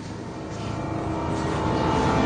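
A low, noisy rumble that grows steadily louder.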